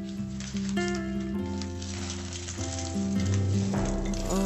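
Background music: a soft instrumental passage with held notes, over a light crackling rustle through the middle.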